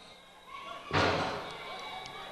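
A single sudden thump about a second in, over faint outdoor background, fading away over about half a second.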